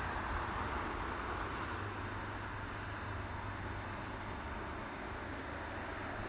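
Steady outdoor background noise: an even hiss with a low rumble underneath, no distinct events.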